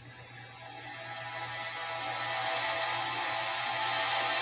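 Background music from a drama's soundtrack swelling in, with held notes that grow steadily louder.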